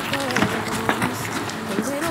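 Footsteps of people running on a hard path, a quick irregular patter of steps.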